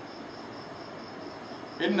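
Insect chirping in a steady rhythm of about five short high chirps a second, over a faint hiss. Near the end a man's voice starts reciting Arabic.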